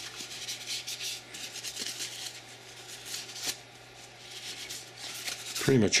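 Paper towel rubbing over the metal parts of a dual-barrel .45 ACP pistol being cleaned, in quick repeated wiping strokes, with a light tap about three and a half seconds in.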